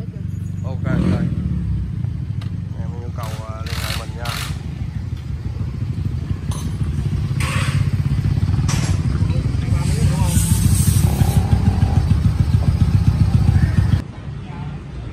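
Suzuki Satria F150 (Raider 150) single-cylinder four-stroke engine running on an Aracer RC Mini 5 aftermarket ECU, its beat growing louder in the second half as the bike is ridden off. Voices are heard briefly a few seconds in.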